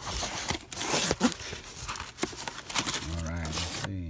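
A cardboard shipping box being opened by hand: its flaps scrape, rustle and crinkle. A brief low voiced hum follows near the end.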